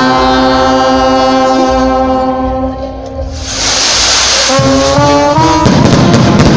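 Brass band of trumpets, trombones and sousaphone holding one long chord for about three seconds. A bright hiss follows, then a run of short stepping notes as the tune gets going, with drum hits joining near the end.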